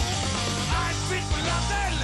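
Rock band playing live: distorted electric guitars, bass and drums, with a male lead vocal.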